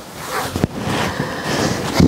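Woven fabric of a stitched dress bodice rustling and swishing as it is handled close to the microphone, with one short click just over half a second in.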